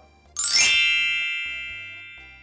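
A bright chime sound effect: a quick upward sparkle about half a second in, then a single ringing ding that slowly fades away.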